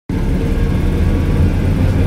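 Invacar invalid carriage's engine running steadily while driving, a loud low drone heard from inside its small cabin.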